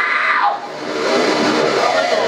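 A screamed metal vocal line cuts off about half a second in, leaving guitar playing on alone.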